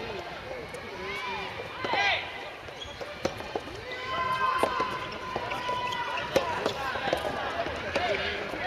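Soft tennis players' wordless shouted calls rising and falling in pitch, one held for about two seconds in the middle, with a few sharp knocks of soft tennis balls struck by rackets.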